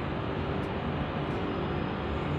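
Steady background hum and hiss with a faint, even tone, unchanging through a pause in speech.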